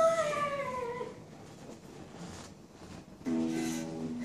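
A child's voice gives one long cry that slides down in pitch and fades out about a second in. Near the end a chord is strummed on a small acoustic guitar and rings on.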